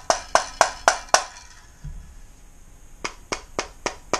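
Fingers tapping the side of a metal AR-15 magazine, about five quick sharp taps in the first second. After a pause of about two seconds, a similar run of taps on a polymer Magpul PMAG starts near the end, as the two magazines' sounds are compared.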